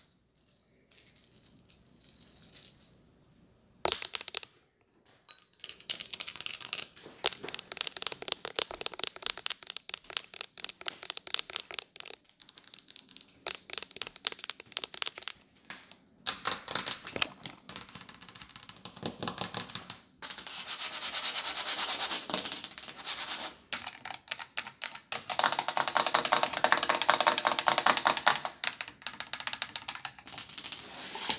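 Long fingernails tapping rapidly and scratching on Christmas tree ornaments and other hard surfaces, in quick flurries broken by brief pauses, ending on the plastic casing of a wall thermostat.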